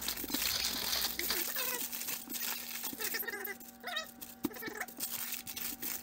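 Parchment paper crinkling and rustling as hands lift it and press a soft lump of homemade air-dry clay on it, with scattered small taps.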